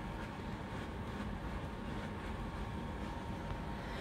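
Steady low background rumble and hiss, room tone, with a faint steady tone and a few faint ticks.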